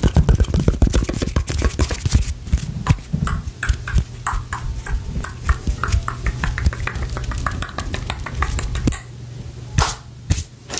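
ASMR hand sounds close to the microphone: fingers and palms making rapid, irregular clicks and taps, over a steady low hum. The clicking is densest at first, thins out, and stops about nine seconds in, with one sharp click just before the end.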